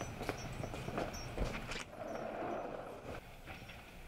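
Footsteps on a hard floor, a handful of steps about two or three a second in the first two seconds, fainter after.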